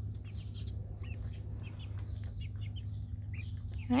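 Young chickens peeping and chirping softly, many short high notes scattered throughout, over a steady low hum.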